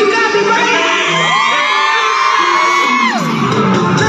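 Loud live hip-hop/pop concert music played through an arena sound system, with the crowd whooping and screaming over it.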